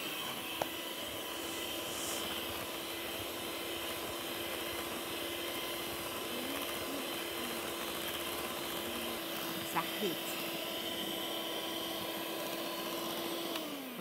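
Electric hand mixer beating cake batter in a glass bowl, mixing in the flour: a steady motor whine that winds down and stops near the end.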